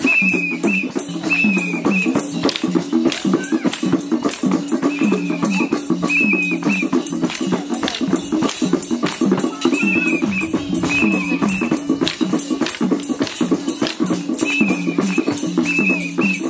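Folk dance music for the Mayur (peacock) dance: a repeating melody carried over a constant fast rattle of clicking percussion, with short high warbling phrases recurring every few seconds.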